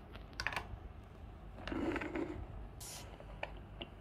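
Small plastic toy pieces clicking and tapping as they are handled and set onto a plastic toy cart, a few separate clicks with a brief rustle about two seconds in.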